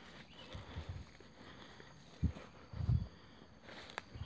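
Footsteps on a dirt forest trail: a handful of soft, low thuds as a person walks, the sharpest one a little past the middle. A faint steady high-pitched hum runs underneath.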